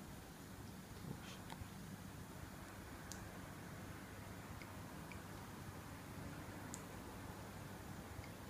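Quiet room hum with a few faint, irregular clicks; no steady signal ticking or beeping stands out.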